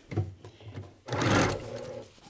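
Electric sewing machine briefly stitching a seam through quilting fabric, loudest for just under a second about a second in.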